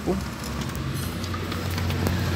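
Chevrolet Aveo 1.6 four-cylinder engine idling steadily, its newly fitted timing belt running in time.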